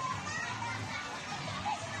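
Children playing in and around a swimming pool, their voices and shouts heard at a distance, mixed with a general steady murmur of people.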